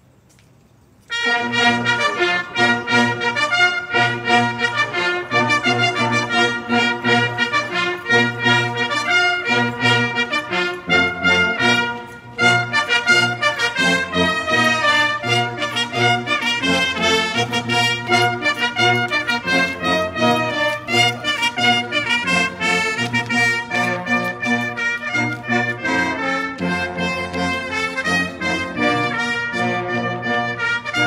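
Brass band playing a march, starting suddenly about a second in, with a brief break near the middle before it goes on.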